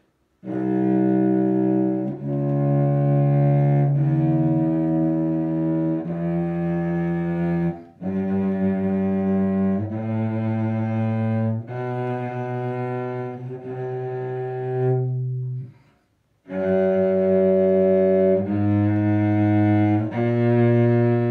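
A 1972 German-made Karl Höfner cello bowed slowly through a scale or two, one held note after another, about a second or two each. The playing breaks off briefly about sixteen seconds in and then starts again. It is played by someone badly out of practice, and only some of the notes are right.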